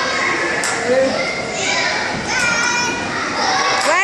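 Children's voices and chatter in a large indoor play hall, with a high-pitched held cry a little past halfway and another rising cry right at the end.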